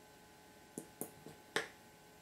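Small plastic squeeze bottle of acrylic paint spitting air in short pops as dots of white paint are squeezed onto shaving cream. There are four quick pops within about a second, and the last is the loudest.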